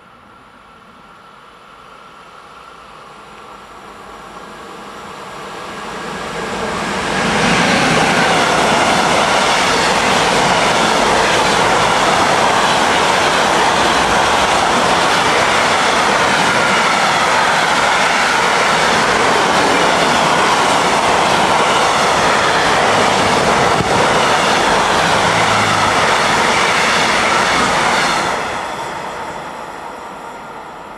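Freight train hauled by a Siemens ES 64 F4 (class 189) electric locomotive passing through a station without stopping. It grows louder over the first several seconds as it approaches, then a long string of trailer-carrying pocket wagons rolls past with steady wheel-on-rail noise, falling away quickly near the end as the last wagon clears.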